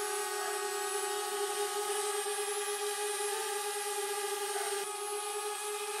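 DJI Spark quadcopter hovering, its four propellers giving a steady, even-pitched whine as it holds a very stable hover.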